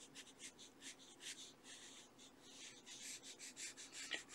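Pencil scratching faintly on sketchbook paper in quick, short shading strokes, a few a second, as tone and a core shadow are laid into a figure drawing.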